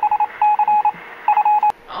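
Electronic beeps serving as a robot character's voice: three quick runs of high, single-pitched beeps, each under half a second long. A sharp click follows near the end.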